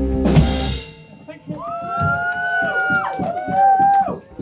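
A live punk band's song ends on a final full-band hit with a drum crash about half a second in, ringing out within a second. Then long held whoops and shouts from voices follow to the end.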